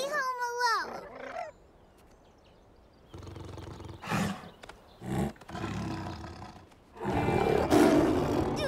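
A cartoon saber-toothed cat growling and snarling, then breaking into a loud roar about seven seconds in. The clip opens with a short gliding vocal cry from a character.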